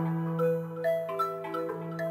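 Software synthesizer (Omnisphere) playing a generative melody fed by the Harmony Bloom MIDI plugin. Single pitched notes start about every half second and ring on over a steady low held tone.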